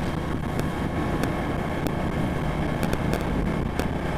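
Engine of a small road vehicle running steadily while travelling along a road, with wind rushing over the microphone.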